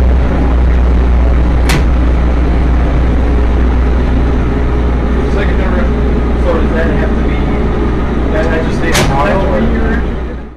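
Generac industrial generator set running with a loud, steady low drone, heard inside the demo truck's control room. Sharp clicks cut through it about two seconds in and again near the end.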